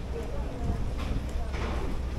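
Footsteps on a paved walkway, with two scuffing steps near the middle, over the background chatter of a crowd and a steady low rumble.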